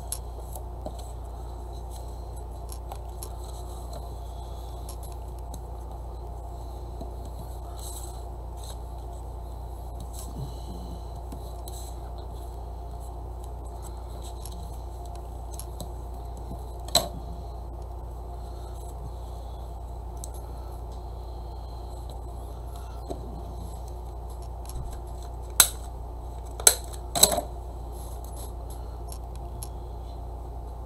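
Paper being handled and pressed on a craft table, with faint rustles and small ticks over a steady low hum. One sharp click comes about halfway through and three more come close together near the end, consistent with tools being snipped or set down.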